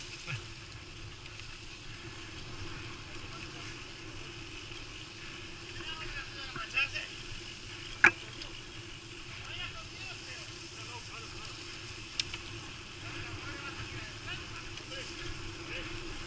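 Mountain bike riding along a dirt trail: steady rolling noise of tyres and bike, with one sharp click about eight seconds in. Faint voices of other riders come and go.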